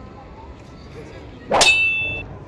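A single sharp metallic clang about a second and a half in, ringing on briefly with a bright, bell-like tone.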